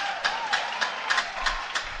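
An audience clapping in time, the claps sharp and even at about four a second.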